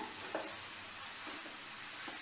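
A metal spatula stirring grated fresh coconut and sugar in a nonstick pan, with a light knock against the pan about a third of a second in, over a steady soft hiss as the mixture cooks.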